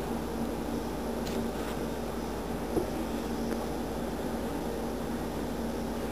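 Steady low electrical hum and hiss, with a few faint clicks.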